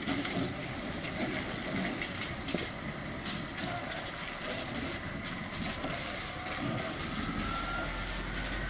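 Fire engine's engine and pump running steadily, with the hiss of a hose spraying water onto a burning car, and a thin whine rising in pitch near the end.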